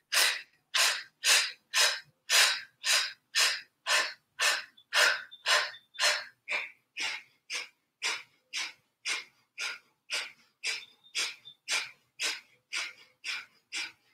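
Kapalabhati (breath of fire) breathing: short, forceful exhales snapped out by drawing the belly in, at an even rhythm of about two a second, growing slightly softer toward the end.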